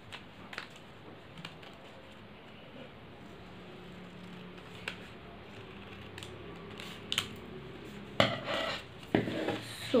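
Scissors cutting origami paper: a few faint, scattered snips, then louder snips and handling sounds of the scissors and paper near the end.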